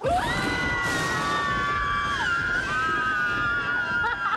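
Several young people screaming together in fright, a long held group scream that starts suddenly and overlapping voices at different pitches.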